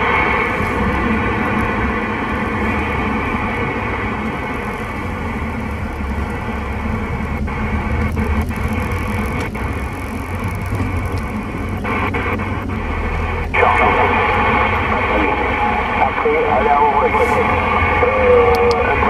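Receiver hiss and static from a President Lincoln II+ CB radio on the 27 MHz band in AM, heard over the low rumble of the moving car. The hiss cuts out briefly a few times as the channel is stepped, and it comes in louder about two-thirds of the way through.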